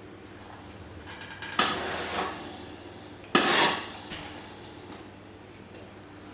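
Steam-generator iron giving two short hisses of steam, each about half a second long, the first about a second and a half in and the second about three seconds in.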